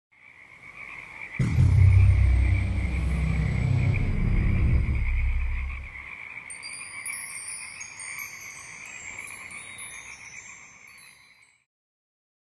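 Produced logo sting built on a steady chorus of frog calls. A deep, loud low boom comes in about a second and a half in, with a high falling swoop, and fades out by about six seconds. High twinkling chime-like notes follow, and everything stops just before the end.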